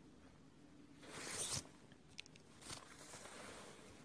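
Faint room tone with a short, soft hiss about a second in and a light click a little after two seconds.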